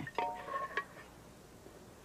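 Metal ladle clinking against the rim of an aluminium pressure cooker, a few light knocks with a brief ringing tone in the first second.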